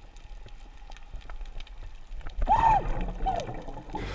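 Underwater recording with muffled water noise: a low rumble and scattered faint clicks, as heard through a camera housing below the surface. About two and a half seconds in comes a brief muffled, wavering voice-like sound.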